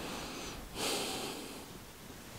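A man's breath through the nose close to the microphone: one short, soft exhale about a second in, over faint hiss.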